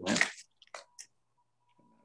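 A man's word trails off, followed by two short faint clicks about a third of a second apart and a faint thin steady tone, before his voice resumes.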